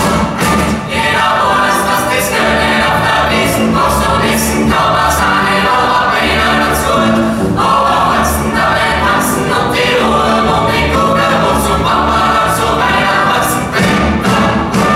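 A choir singing with a big band accompanying: horns, bass and drums with regular cymbal strikes, loud and steady throughout.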